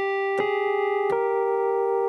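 Novation UltraNova synthesizer played from its keyboard: a held chord, with new notes struck about half a second in and again at about a second, changing the chord's pitches.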